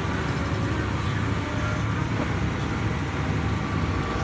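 2003 Ford Escape's engine idling steadily, a low even rumble heard from inside the cabin.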